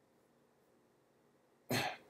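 Near silence, then near the end a man coughs once, briefly.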